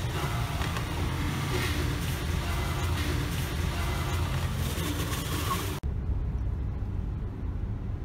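Busy street noise, then, after a sudden cut about six seconds in, the low engine and road rumble of a car heard from inside its cabin.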